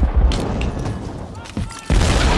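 War-film battle soundtrack: a loud, dense din of deep rumble and sharp strikes, with a voice shouting briefly about a second and a half in.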